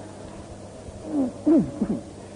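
A few men in the listening audience call out in appreciation during a pause in a live Quran recitation: short overlapping exclamations, each falling sharply in pitch, from about a second in to near the end.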